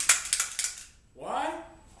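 A handheld stapler snapped shut repeatedly, a rapid run of sharp metallic clacks over the first second. A short wordless vocal sound follows.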